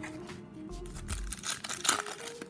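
Foil hockey-card pack crinkling as it is pulled from the box and torn open, a run of sharp crackles in the second half, over quiet background music.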